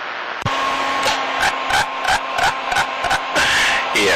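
CB radio receiver between transmissions: a moment of static hiss, a click as a station keys up, then a steady hum-like tone under choppy, garbled noise pulsing about three or four times a second.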